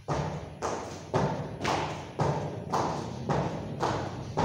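Rubber tyre lying flat on a mat, thudding under repeated jumps as shoes land on it, about two landings a second in a steady rhythm.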